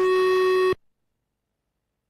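A loud, steady electronic beep tone that cuts off suddenly less than a second in.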